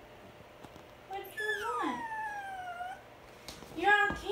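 Puppy whining: a long whine about a second in, sliding down in pitch over about two seconds, then a second string of whines starting just before the end.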